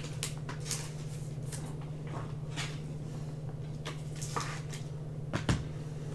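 Trading-card packs and cards being handled: scattered soft crinkles and taps, with a sharper tap near the end, over a steady low electrical hum.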